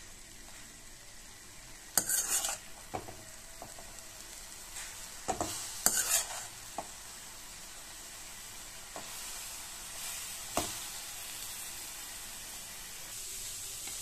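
Grated carrot sizzling in a stainless steel pan as a steel ladle stirs it, with a few short scrapes of the ladle against the pan, the loudest about two seconds in and around six seconds.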